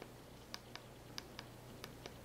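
Faint clicks of the Garmin GPSMap 66st's push buttons being pressed, five quick clicks mostly in pairs, over a low steady hum.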